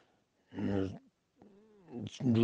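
A man's voice in a pause of his talk: one short voiced sound about half a second in, then a softer sound near the end whose pitch rises and falls.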